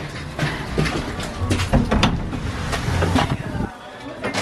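Knocks and rustling as a heavy entrance door is pushed open and someone walks through, over a low rumble; the noise drops off suddenly near the end.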